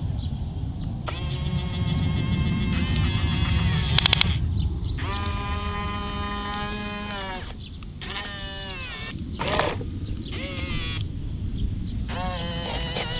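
A toy RC excavator's electric motors whine in several long steady runs as the boom and bucket move, each run gliding in pitch as it starts and stops, over a low rumble. A quick rattle of sharp clicks comes about four seconds in.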